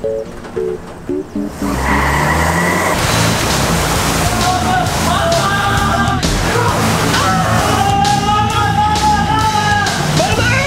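Music, at first alone as short notes. About two seconds in, a loud continuous rush of noise joins it: water balloons slide and crash around the cargo box of a moving U-Haul box truck. Long held cries rise over the noise in the middle and again near the end.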